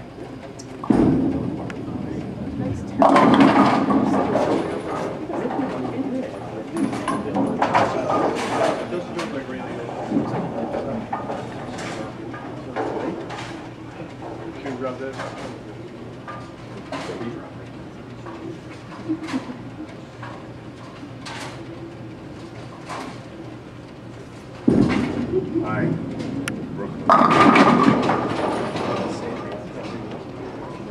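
Bowling ball thudding onto the lane and rolling, then crashing into the pins about three seconds in; the same happens again near the end. Chatter and scattered pin crashes from other lanes of the alley run underneath.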